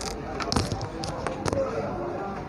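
Several sharp clicks and taps from a smartphone being handled and a micro-USB charging plug being pushed toward and into its port, the loudest about half a second in and another near 1.5 s.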